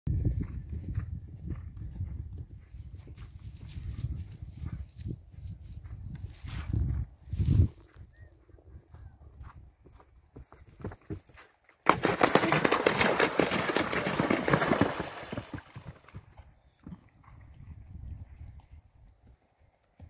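Horse's hoofbeats on turf, then a sudden loud splashing lasting about three seconds, starting about twelve seconds in, as the horse goes through a water jump. A low rumble runs under the first several seconds.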